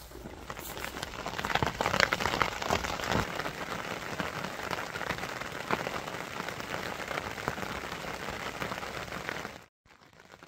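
Heavy rain pattering on the fabric of a fishing bivvy and tarp shelter, a dense steady patter of drops that cuts off suddenly near the end.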